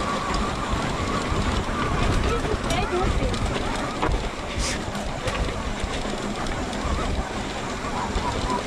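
Riding noise from an electric mountain bike on a cobblestone trail: a steady low rumble of wind on the microphone and tyres rattling over the stones, with a few sharp clicks and knocks from the bike.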